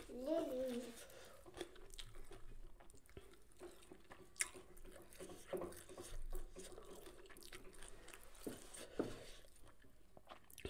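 A person chewing a mouthful of catfish curry, with a few sharp mouth clicks. A short hummed voice sound opens it.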